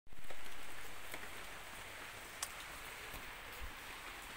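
Steady, faint outdoor hiss with a few soft ticks, louder at the very start and settling within about a second and a half.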